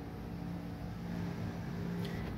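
A steady low hum with a faint hiss, unchanging throughout: background room noise of a running appliance or air conditioner.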